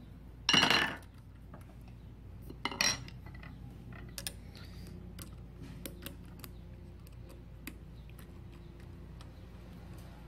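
Small metal clinks and clicks of a screwdriver and screws against the steel feed dog and throat plate of an industrial sewing machine, as the feed dog screws are put in and turned. There is a louder clatter about half a second in and another near three seconds, then light scattered ticks.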